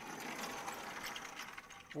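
A sliding lecture-hall blackboard panel being pushed up along its tracks, a steady rattling scrape with rapid fine ticks that lasts about two seconds.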